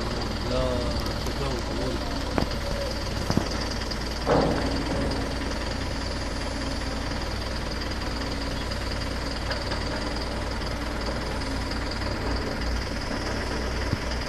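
Steady low rumble of a vehicle's engine and road noise, with brief voice sounds in the first couple of seconds and a few short knocks, the loudest about four seconds in.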